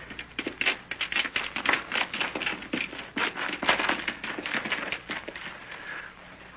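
Radio-drama sound effect of several people hurrying off through brush: a rapid, uneven run of crackling, rustling steps that dies down near the end.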